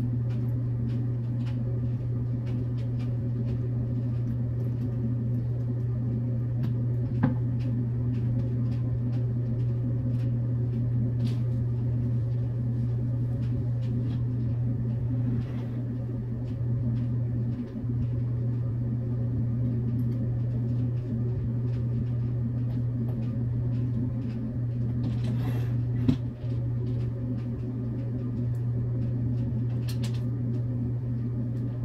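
A steady low hum runs throughout, with a few light knocks and clicks from the wooden flat-pack TV console being handled. The sharpest click comes about seven seconds in and the loudest about 26 seconds in.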